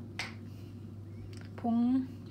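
A short, sharp snap as the cap comes off a small glass spice jar, just after the start.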